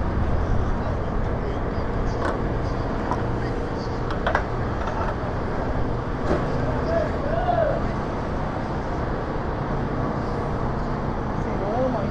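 A motor running with a steady low hum, with a few faint knocks and faint voices about seven seconds in.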